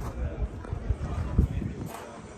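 Background voices of people talking, with a few short low thumps, the loudest about one and a half seconds in.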